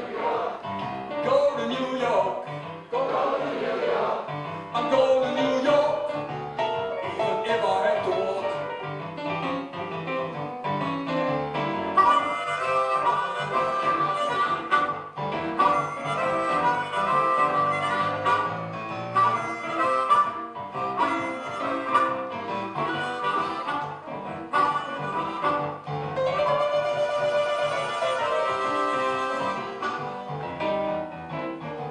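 Blues harmonica solo played into a vocal microphone, with electric piano accompaniment from a Roland stage piano.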